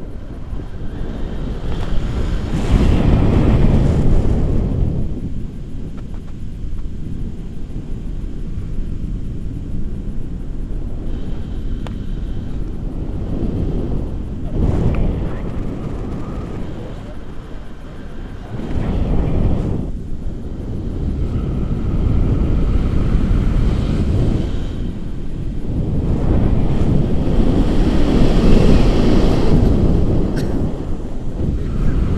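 Wind rushing over the camera microphone as a tandem paraglider flies, swelling and easing in strong surges: loudest a few seconds in and again near the end.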